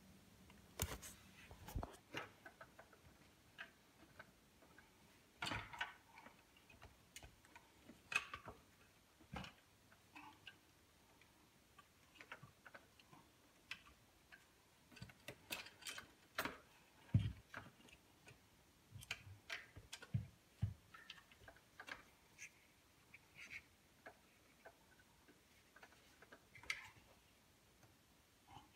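Irregular soft clicks and knocks of hard plastic parts being handled: a dishwasher's heater and circulation pump assembly being worked loose by hand and lifted out. The sharpest knock comes about two-thirds of the way through.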